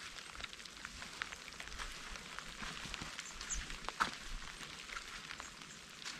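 Quiet outdoor ambience with faint scattered ticks and crackles, and one sharper click about four seconds in.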